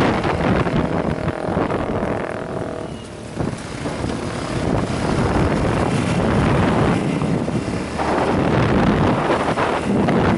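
Wind rushing over the microphone of a camera on a moving motorcycle, with the engine running underneath; the noise dips briefly about three seconds in.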